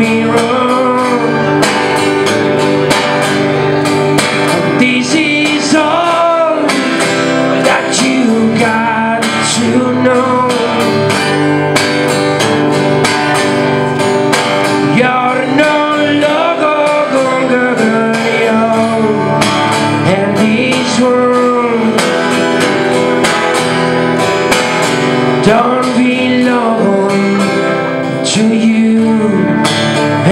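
Acoustic guitar strummed steadily while a man sings over it, his voice sliding and wavering between held notes.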